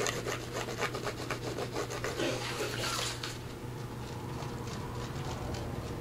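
Tip of a squeeze glue bottle scratching and rubbing along a paper card as glue is run onto its back, in quick dense strokes for about three seconds, then quieter paper handling.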